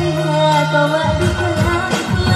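A woman singing a dangdut song into a microphone over amplified band music with drums, heard through a PA system.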